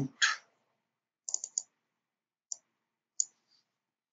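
Computer mouse clicking: a quick run of three clicks, then two single clicks about a second apart, selecting text in the editor.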